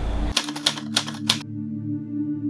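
A quick run of about six sharp, typewriter-like clicks over the first second and a half, laid over a sustained ambient music drone of steady tones that starts about a third of a second in.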